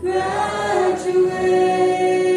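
Choir of high-school students singing a graduation song together. A new phrase begins, and from about a second in they hold one long note.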